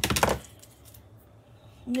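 Scissors being picked up off a craft table: one short knock and clatter right at the start.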